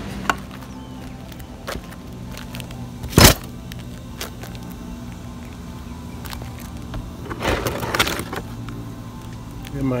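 A few sharp knocks over a faint steady hum: one loud knock about three seconds in, and a short cluster of lighter knocks a little before eight seconds.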